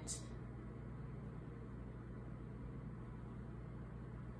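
Steady low hum with a faint hiss: room tone, with no distinct sounds standing out.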